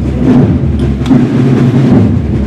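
Military band drums playing a procession march: a dense, loud low drum sound with sharp strokes at regular intervals.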